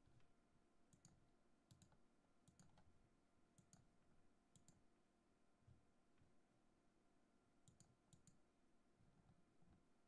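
Faint clicking of computer controls, in about seven groups of closely spaced clicks, mostly pairs, over near-silent room tone.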